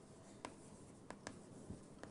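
Faint taps and scratches of writing on a board, about four short taps over quiet room noise.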